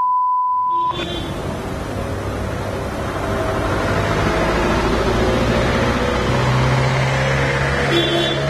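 A steady electronic beep at one pitch lasts just under a second and cuts off. Then comes outdoor street noise with a vehicle engine running, its hum rising slightly in pitch past the middle.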